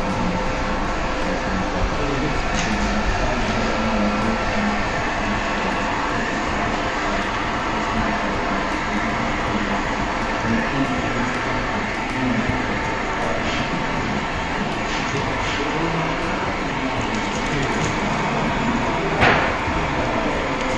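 Handheld electric heat gun blowing steadily while warming vinyl wrap film on a car's body panels, with a short sharp noise about a second before the end.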